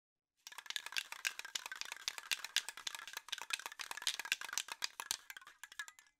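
Aerosol spray paint can being shaken, its mixing ball rattling in a fast, dense run of metallic clicks over a faint ring of the can. It starts about half a second in and stops suddenly at the end.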